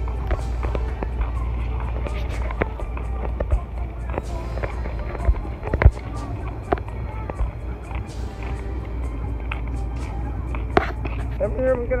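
Handheld phone microphone picking up walking noise: irregular knocks and rubbing clicks from the phone being carried, over a steady low rumble. Faint music and voices sit in the background, and the loudest knock comes about halfway through.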